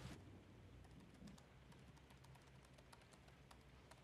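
Faint, irregular clicking of typing on a computer keyboard, part of the film's soundtrack as a document is typed on screen.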